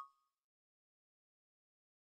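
Near silence: the last ring of a struck chime dies away right at the start, and then there is nothing.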